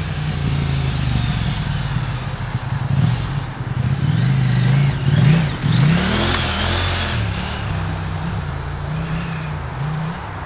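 Husqvarna Norden 901's 889 cc parallel-twin engine under way, its pitch rising and falling as the throttle is opened and closed. A burst of rushing noise comes about six seconds in.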